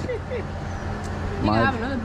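A steady low mechanical hum, with brief bits of a voice at the start and again about a second and a half in.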